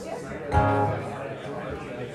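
An acoustic guitar chord strummed once about half a second in, ringing and fading over about a second, over background room chatter.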